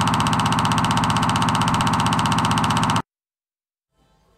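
Buzzing sound effect for a film-leader countdown transition: one steady, loud buzz with a fast, even rattling pulse that stops suddenly about three seconds in, followed by silence.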